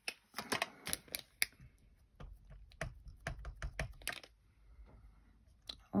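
Sharp plastic clicks and light taps, several close together in the first second and a half and softer, scattered ones after: a black ink pad's plastic case being opened and handled, and a clear acrylic stamp block being handled and set on a cutting mat.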